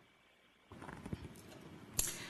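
A few soft knocks on a desk microphone as it is handled, ending in a sharp click, typical of the microphone being switched on.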